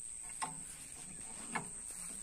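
Faint metallic clicks of an adjustable wrench on the nut of a tractor's steering tie rod as the nut is tightened, two clicks about a second apart.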